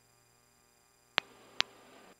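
A near-silent cockpit intercom line with a faint steady electrical hum, broken near the end by two sharp clicks about half a second apart. After the clicks the line's background hiss rises slightly, as when a headset microphone is keyed open.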